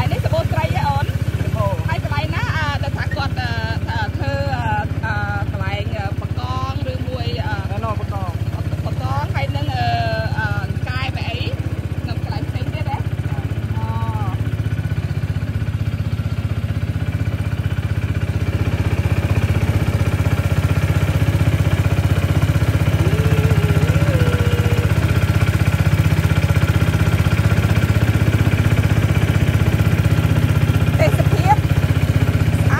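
Small motor boat's engine running steadily, a low drone throughout, growing a little louder with more hiss in the second half. Voices talk over it for about the first fourteen seconds.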